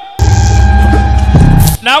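Loud, deep electric humming sound effect that runs for about a second and a half, stepping up in pitch near the end and cutting off, over a faint steady music tone.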